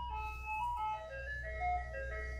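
Ice cream truck jingle playing a simple melody of held single notes that step up and down, over a low steady hum.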